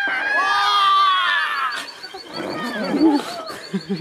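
High-pitched shrieking from children for about two seconds, then lower voices calling out.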